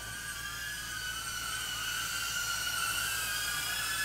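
DJI Avata FPV drone's ducted propellers whining in flight: a high steady whine that wavers slightly in pitch and grows gradually louder as the drone comes in close.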